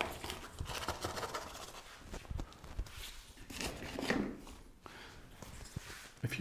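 Potting compost being scooped with a hand scoop and dropped into a pot around the plants: irregular rustling and soft scraping with small knocks.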